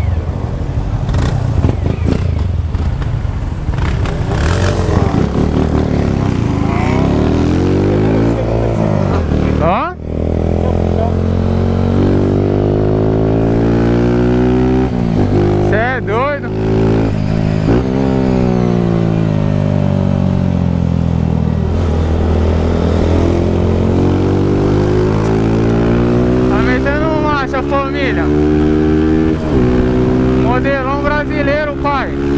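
Honda CG 160 single-cylinder motorcycle engine accelerating hard: the revs climb, drop sharply at an upshift about a third of the way in and again just past halfway, then climb again.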